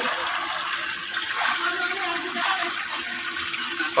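Steady stream of water pouring from a plastic pipe into a shallow concrete tank, with light splashing as hands move through the water.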